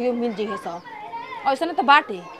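Voices talking, with children's voices in the background; a short loud burst of voice comes near the end.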